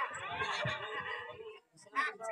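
A person's high, wavering voice, with no words made out, that breaks off about a second and a half in.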